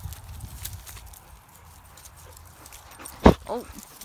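Dogs playing with a rope toy on grass: low rumble of the phone being handled and faint rustles, then one sharp knock about three seconds in, the loudest sound, like a bump against the phone.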